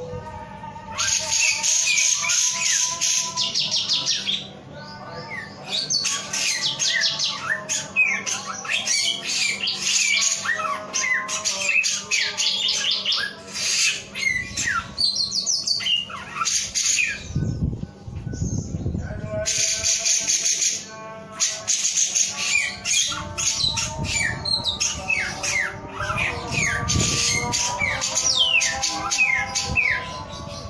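A caged male samyong songbird singing a long, varied song of rapid chattering trills and quick down-slurred whistles. It breaks off briefly about four seconds in and again for a few seconds past the middle.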